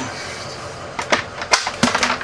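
A steady background hum, then a quick run of about half a dozen sharp knocks and clacks starting about a second in.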